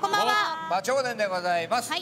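Several voices speaking together: a group greeting said in unison while bowing.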